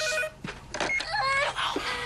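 A telephone rings with a pulsing electronic trill that cuts off just after the start as it is answered. Then come several loud, high-pitched wailing cries that fall in pitch.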